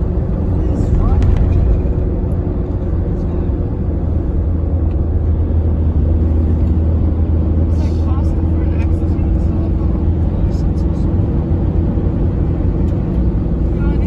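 Steady low drone of a vehicle driving at highway speed, heard from inside the cab: engine and road noise that holds an even level throughout.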